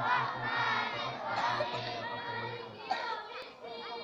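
A large group of boys' voices chanting together in unison over a steady droning tone.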